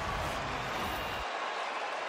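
Steady stadium crowd noise, an even roar, with a low rumble through about the first second.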